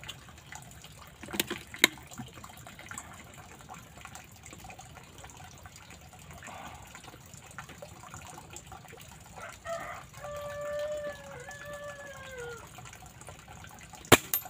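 Two sharp clicks close together about a second and a half in. Later, a rooster crows once, about ten seconds in: one call of about two and a half seconds that falls in pitch at its end.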